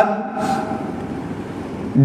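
A pause in a man's speech filled by a steady background noise, with the tail of his last word fading away in the first second.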